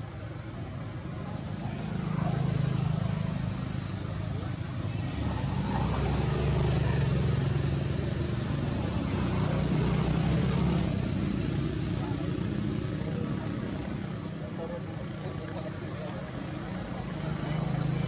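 Low rumble of passing motor vehicles, swelling and fading a few times, with indistinct voices in the background.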